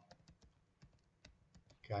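Computer keyboard typing: an irregular run of quiet key clicks, about a dozen in two seconds.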